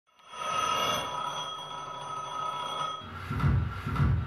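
Electronic soundtrack of a video installation: a steady, high ringing tone with many overtones fades in and cuts off about three seconds in. A low pulse then starts and repeats a little more than every half second.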